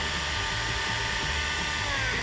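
Countertop blender running at a steady speed, puréeing a thick mixture of canned chickpeas and corn, with a steady motor whine. Near the end it is switched off and the whine falls in pitch as the blades spin down.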